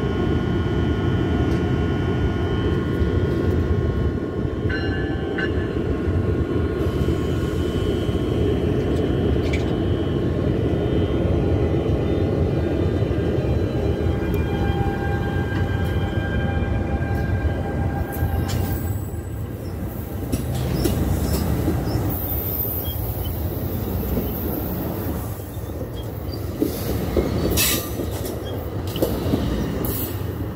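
NJ Transit push-pull passenger train of bi-level Multilevel coaches rolling past close by at the platform: a loud, steady rolling rumble of wheels on rail, with thin, steady high-pitched tones over it through the first half. In the second half, as the last car draws away, the sound thins and gusts buffet the microphone.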